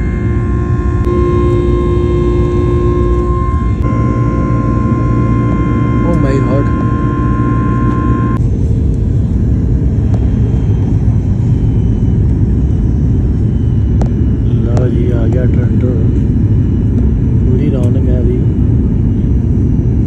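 Airliner cabin noise: a loud, steady rumble of engines and airflow, with a steady multi-tone engine whine over it for the first eight seconds or so that then cuts off. Faint voices come and go in the second half.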